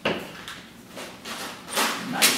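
Plastic bottle weighted with small beads or pebbles being handled: a sharp knock at the start, then rubbing, and a loose rattle of the weights shifting inside shortly before the end.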